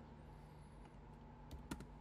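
Computer keyboard keystrokes: three or four quick key clicks about one and a half seconds in, over a faint steady hum.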